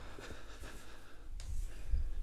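Faint room sound of a person moving about in a small room, with a few soft low thuds near the end.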